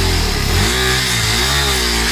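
KTM 390 Adventure's single-cylinder engine revved twice, the pitch rising and falling each time, as the clutch is slipped to drive the bike up over a rocky ledge.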